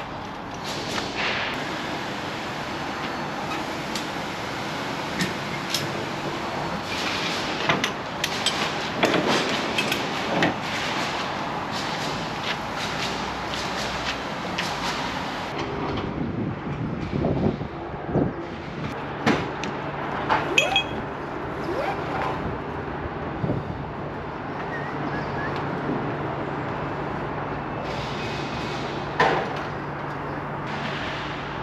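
Ratchet straps on a flatbed trailer load being worked by hand: irregular clicks, clanks and knocks from the metal ratchet buckles and loose webbing. In the second half a low steady hum runs underneath.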